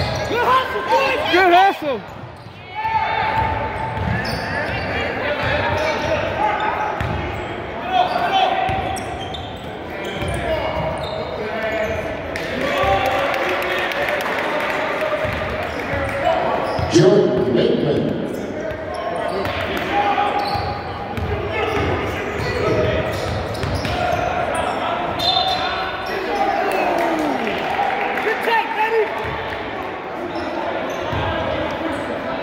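Basketball game in a gymnasium: a ball dribbling on the hardwood court among the echoing, indistinct voices of players and spectators, which rise about seventeen seconds in.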